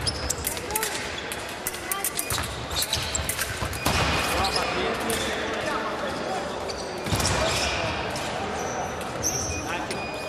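Fencers' footwork thudding and stamping on a sports hall's wooden floor, with sharp blade clicks and voices echoing in the large hall. The action grows louder about four seconds in, and a short high beep sounds near the end.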